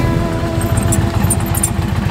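Indian Challenger's V-twin engine running at low revs as the motorcycle rolls to a stop, a steady low rapid pulsing. Over the first second, a last guitar chord of background music rings out and fades.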